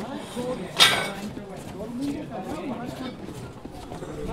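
Crowd chatter, with one sharp, loud knock about a second in.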